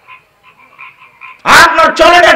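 Faint rhythmic croaking, like a frog chorus, in the background during a pause. About a second and a half in, a man's voice comes in loudly over a microphone.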